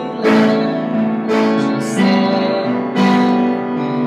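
Upright piano playing a slow pop-song accompaniment, with chords struck about once a second and left ringing between strikes.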